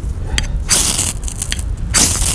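A knife blade scraped hard down a ferrocerium rod, throwing sparks onto wood shavings to light a fire. One rasping stroke comes about two-thirds of a second in and another begins near the end, with small clicks between.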